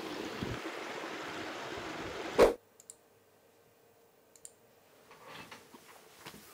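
A steady outdoor rushing noise for about two and a half seconds, ending in a short loud burst. Then a quiet room with a few faint clicks at a computer desk.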